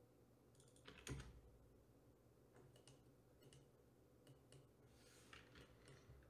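Near silence with faint computer keyboard keystrokes and clicks in small scattered groups, the loudest about a second in, over a low steady hum.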